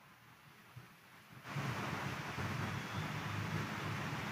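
Near silence, then a steady rushing noise, like room noise or hiss, comes in suddenly about a second and a half in and holds.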